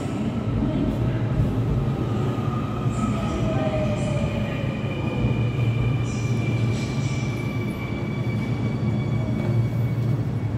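Seoul Subway Line 2 electric train pulling into the station behind the platform screen doors: a steady low rumble of wheels on rail. Over it run thin electric whines that slowly fall in pitch as the train brakes.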